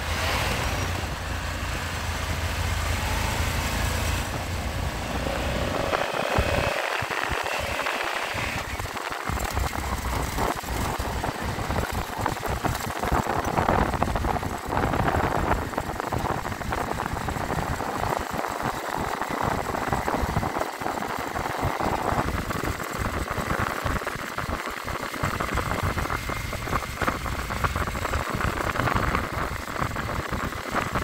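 Motorcycle engines running at riding speed, with wind buffeting the microphone in uneven gusts.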